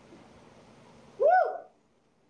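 A woman's short, loud "woo!" cheer of encouragement about a second in, rising and then falling in pitch, over faint room noise.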